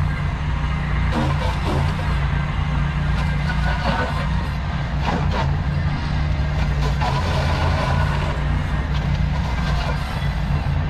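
Ventrac compact tractor's engine running steadily under load as its Tough Cut brush deck cuts into brush and saplings, with irregular crackling from the woody growth being cut.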